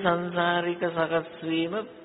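A monk's voice chanting Pali in a slow recitation, drawing out long held notes that step between a few pitches, with short breaks between phrases.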